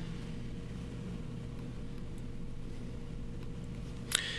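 Steady low hum with a faint, thin higher tone above it: background room noise with no distinct events.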